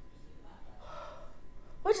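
A woman's faint, breathy gasp of surprise about a second in, followed near the end by the start of her speech.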